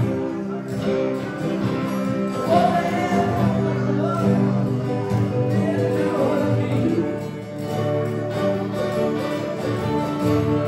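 A small live band plays a song: electric guitar, mandolin and acoustic guitar, with a lead voice singing over them for part of it.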